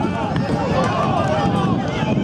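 A voice talking continuously and rapidly without pause, like football play-by-play commentary, over steady background noise.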